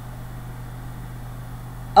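A pause in speech: only room tone with a steady low hum.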